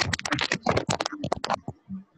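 Typing on a computer keyboard: a quick, uneven run of key clicks that stops about one and a half seconds in.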